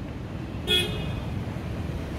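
Steady rumble of road traffic, with one short car-horn toot a little under a second in.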